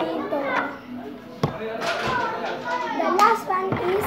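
A young child's voice talking and vocalising, with a few sharp knocks from plastic Play-Doh tubs being handled.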